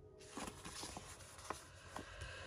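A sheet of thick embossed wallpaper being slid and repositioned by hand on a tabletop: faint paper rustling with a few light clicks and taps.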